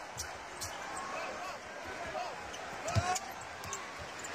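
A basketball being dribbled on a hardwood court, with short sneaker squeaks, over the steady noise of an arena crowd; the firmest bounce lands about three seconds in.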